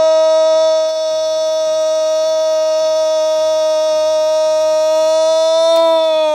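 Radio football commentator's goal call: one long, loud, unbroken shout of 'gol' held on a steady pitch.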